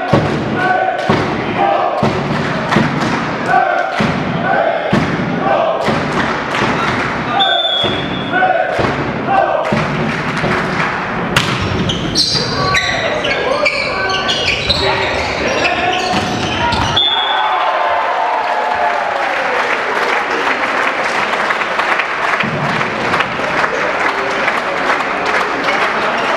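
Volleyball being played in an echoing sports hall: repeated ball strikes and thuds among players' shouts and voices. About two-thirds of the way in the hits stop and a steady crowd din takes over.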